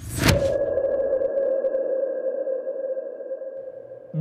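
Electronic logo-intro sound effect: a brief noisy hit, then a steady synthetic tone that rings on and slowly fades away.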